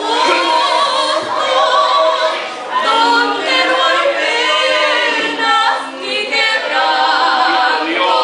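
Two women singing a religious duet unaccompanied into a microphone, in long held phrases with short breaks between them.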